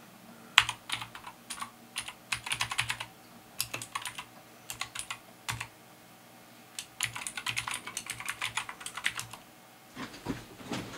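Computer keyboard typing: quick runs of keystrokes for the first half, a pause of about a second and a half, then another fast run that stops shortly before the end.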